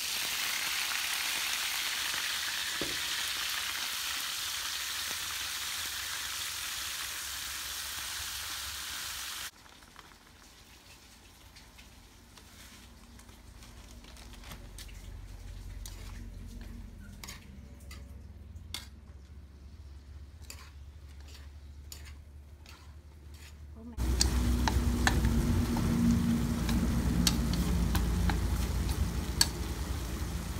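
Water lily stems tipped into hot oil in a wok, sizzling loudly for about nine seconds. Then quieter stir-frying, with chopsticks clicking and scraping against the wok. Near the end the sizzle grows louder again over a low hum.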